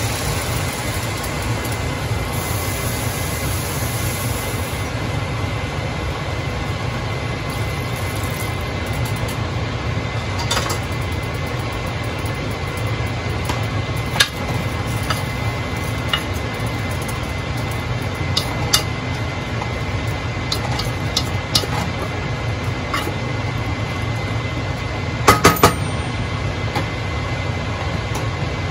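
Water poured from a cup into a large aluminium pot for the first few seconds. Then scattered clinks and knocks of metal on the pot follow, with a quick cluster of sharper clinks near the end, over a steady low hum.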